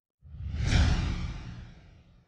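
A whoosh transition sound effect with a deep rumbling low end. It swells in a fraction of a second after silence, peaks just under a second in, then fades away.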